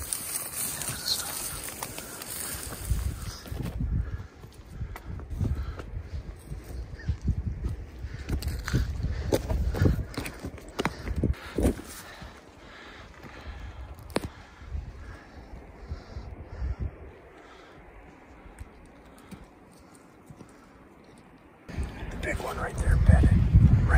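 Irregular footsteps and rustling as someone climbs through dry grass and over rock, with scattered sharp clicks of boots or gear. It gets quieter in the last third.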